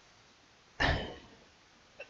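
A man clearing his throat once, a short rough burst about a second in.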